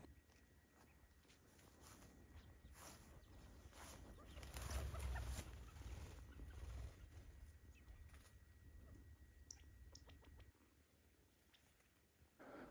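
Faint sounds of a covey of quail as the birds leave their perch, loudest about four to seven seconds in, over a low rumble; it falls silent shortly before the end.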